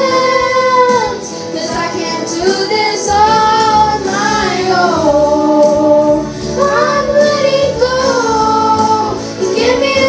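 Two young girls singing together into handheld microphones, holding long wavering notes that slide between pitches.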